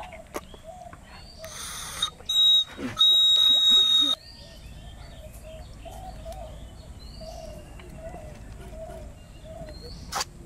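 A loud steady hiss with a thin high whistle in it lasts about two and a half seconds, starting a second and a half in and cutting off suddenly. Birds then chirp repeatedly over a quiet outdoor background.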